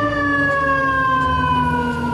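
Fire engine siren sounding one long tone that slides slowly down in pitch, over a low rumble.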